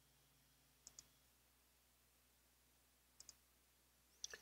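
Near silence broken by two faint pairs of computer mouse clicks, one about a second in and another just after three seconds, selecting cells on screen.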